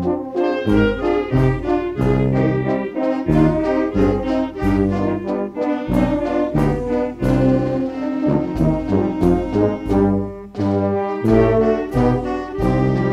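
Brass band music: horns and trombones playing a melody over low bass notes on a steady beat.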